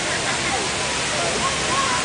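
Tall vertical water jets of a large park fountain splashing down into its pool: a steady rushing hiss with no breaks, with faint distant voices under it.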